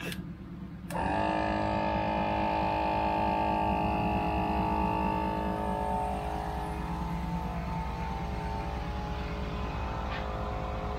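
GSPSCN dual-piston 12-volt portable air compressor switching on about a second in and then running steadily with a whining hum over a fast low pulsing as it inflates a tyre from about 15 psi. It is powered straight from the vehicle battery.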